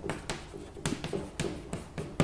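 A few light taps or knocks, roughly one every half second.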